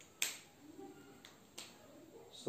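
A marker tapping against a whiteboard while drawing: three sharp clicks, the first about a quarter second in and the loudest, then two weaker ones about a second later.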